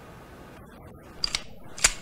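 Short mechanical clicks of a handgun being handled and cocked: a small cluster of clicks a little past a second in, then one sharp click near the end.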